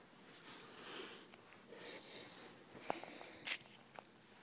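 Faint rustling and scuffing of a baby's cloth sleeper on a rug as she rolls over, with a few sharp clicks, the strongest near three seconds in.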